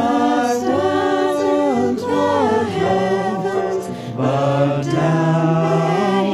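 Choir singing a hymn in harmony, holding long notes, with short breaks between phrases about two and four seconds in.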